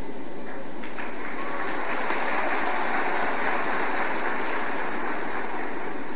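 Large audience applauding steadily, the clapping swelling about a second in and holding even throughout.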